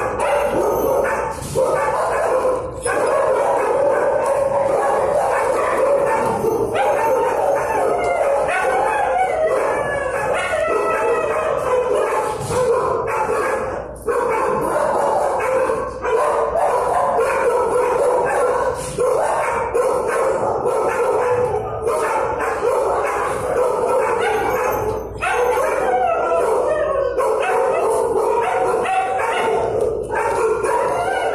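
Many dogs barking, yipping and howling at once in a shelter kennel block: a steady, unbroken din of overlapping calls.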